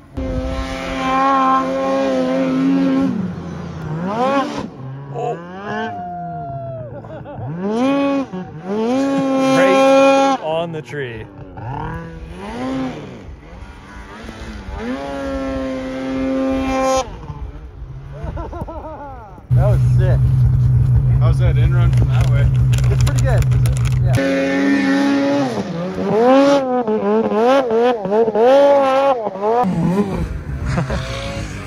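Two-stroke mountain snowmobile engines revving in deep powder, the pitch climbing and falling again and again with the throttle. About two-thirds of the way through, a steady, lower engine drone holds for several seconds before the revving resumes.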